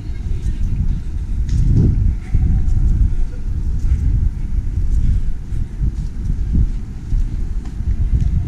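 Wind buffeting a camera microphone outdoors, a low rumble that rises and falls in gusts.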